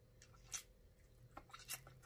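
Faint, close-miked mouth sounds of eating meat picked off a neck bone: a few soft wet smacks and clicks of chewing and sucking fingers, the clearest about half a second in.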